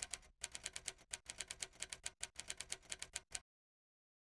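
Typing sound effect: a quick, even run of key clicks, about six a second, that stops suddenly about three and a half seconds in.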